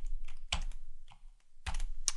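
Computer keyboard typing: a short run of keystrokes, a pause of about half a second, then a quick cluster of keystrokes near the end.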